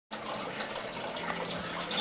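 Steady bubbling and splashing of aquarium water from a curtain of air bubbles rising to the surface, with a faint low hum underneath.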